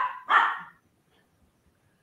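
A man laughing in two short breathy bursts near the start, then near silence.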